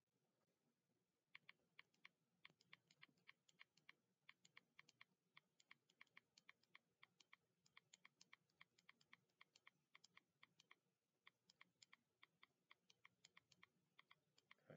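Faint typing on a computer keyboard: a quick, irregular run of key clicks, several a second, starting about a second in.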